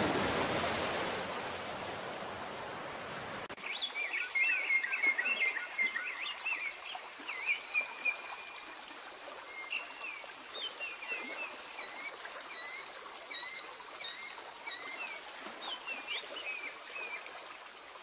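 A wash of sound fades out over the first three seconds. Then, suddenly, small songbirds chirp and whistle in quick short phrases over the steady hiss of a trickling stream.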